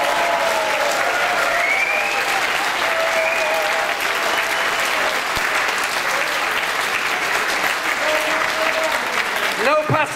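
Hall audience applauding steadily, with a few voices calling out over the clapping. The applause eases off near the end.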